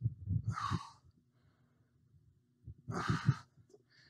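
A man breathing out hard twice with exertion while rowing a dumbbell, once at the start and again about three seconds in, the breath puffing on the microphone.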